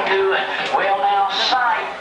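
A square dance caller's voice chanting Plus patter calls in a steady run.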